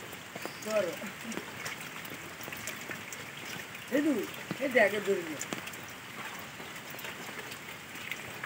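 Steady rain pattering into a shallow puddle on wet ground, with many small drop ticks. Short gliding vocal calls break in about a second in and twice around four to five seconds in.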